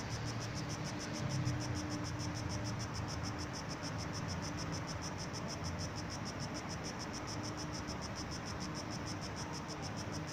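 Low rumble of distant construction machinery, with a steady hum that drops out about eight seconds in. Over it runs a high, even chirping about five times a second.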